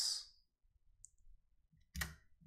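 A single sharp computer click near the end, as the crossword's selection jumps to the next clue, with a fainter tick about a second in. The rest is quiet room tone after the hissy tail of a spoken word.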